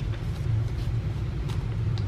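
A steady low rumble with no clear source, with a couple of faint paper ticks as a folded paper flap is handled.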